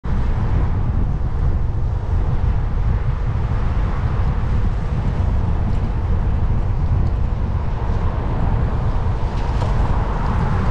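Steady wind rumble on a bicycle-mounted camera's microphone while riding, with tyres hissing on a wet road. Near the end a car comes up from behind and passes close.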